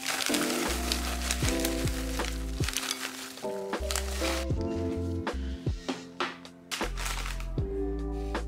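Background music with pitched notes over a bass line. During the first half, dry popcorn rustles and patters as it is poured from a plastic bag into a glass bowl.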